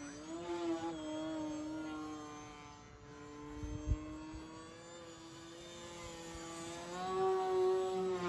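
Brushless electric motor and propeller of a Flex Innovations Yak 55 RC aerobatic plane running on a 6S battery: a steady whine whose pitch wavers with throttle and climbs and gets louder near the end. A brief low thump sounds about halfway through.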